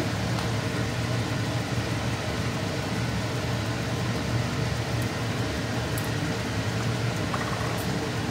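Steady hum and rushing noise of a running fan, over masala paste frying in oil in an iron kadai.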